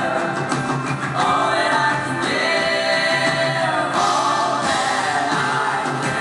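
Live indie-pop band playing a song, with long held sung notes by several voices over guitars, keyboard and drums; the notes change every second or two.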